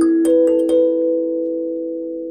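Sansula kalimba's metal tines plucked by thumb, with the instrument pressed onto a djembe's drum head so that the drum skin acts as a resonator and makes it louder. Four quick notes in the first second, then the notes ring on and slowly fade.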